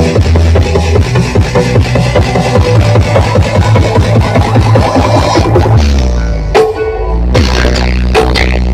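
Loud DJ dance music played through a massive stacked-speaker sound system, a fast beat over heavy bass. About six seconds in the beat stops for a held bass note and a brief dip, then it comes back in.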